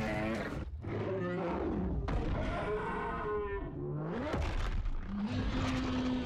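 Film sound design of giant monsters roaring and growling during a fight: several long, pitch-bending roars, one ending in a deep growl near the end, mixed with a few heavy crashes.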